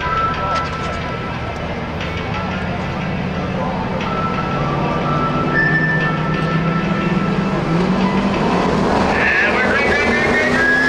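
A pack of Ford Crown Victoria stock cars' V8 engines running together at low speed in formation, rising in pitch near the end as the field speeds up.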